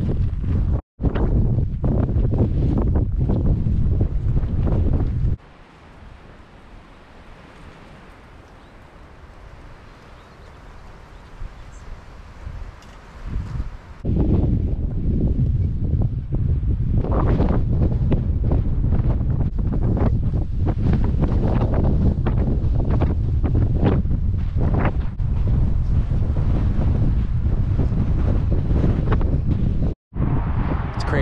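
Wind buffeting the camera's microphone as a heavy low rumble, dropping to a much quieter stretch of lighter wind from about 5 to 14 seconds, then heavy buffeting again.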